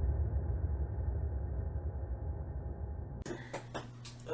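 A muffled, bass-heavy rumbling sound, edited in under a title graphic, fading slowly and cut off abruptly about three seconds in. What follows is quiet room tone with a few faint clicks.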